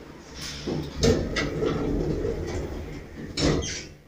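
Atlas Excell traction elevator's sliding car and landing doors closing after the door-close button is pressed. They rumble across with a few clicks and end with a louder bump as they shut, about three and a half seconds in.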